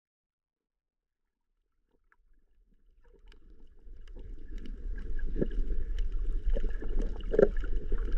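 Muffled underwater sound picked up by a GoPro in its housing while snorkelling: a low rumble of moving water with scattered faint clicks. It fades in from silence after about two seconds.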